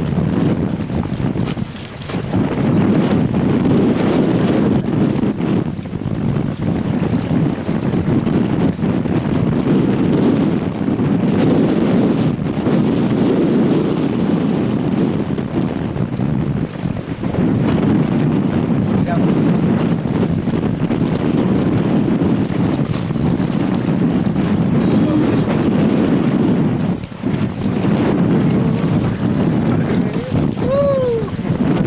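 Steady wind buffeting the microphone over the rush of river water, with a few brief lulls.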